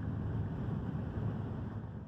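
A van's steady road and engine rumble heard from inside the cab while driving at highway speed.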